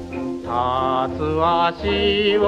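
A 1930s Japanese ryūkōka gramophone recording: after a short dip in the accompaniment, a singer comes in about half a second in with held notes that waver in vibrato over the band.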